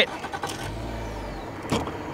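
Boat's outboard motor running at slow trolling speed, a steady low hum with a brief deeper swell about a second in.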